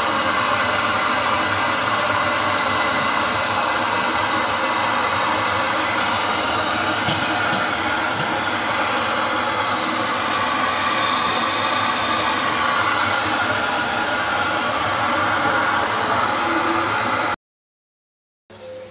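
Gas stove burner running steadily under a plate-iron wok that is being heat-seasoned. The sound cuts off suddenly shortly before the end.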